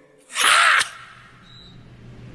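A man's sharp, breathy exhale, like a sigh, lasting about half a second, followed by a quiet low hum.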